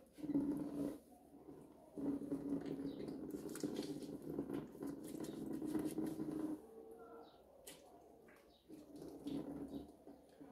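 Water running from the tap of a plastic water bucket over hands into a basin during hand washing, in spells with short pauses: a short run at the start, a longer run of a few seconds, a quieter stretch with a few small knocks, and a last short run near the end.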